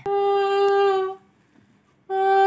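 A single steady note, hummed or sung on one pitch and held for about a second, then quiet.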